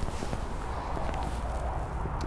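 A golfer shuffling back into his stance on a hitting mat: faint foot and clothing movement with a couple of light taps about a second in, over a steady low room hum.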